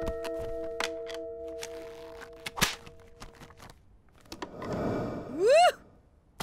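A cartoon music sting: a held chord with a run of sharp clicks and one louder thunk about halfway through. Then a rushing swell and a short voiced whoop near the end.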